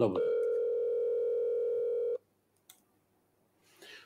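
A mobile phone placing a call, its ringing tone coming through the phone's loudspeaker: one steady tone lasting about two seconds.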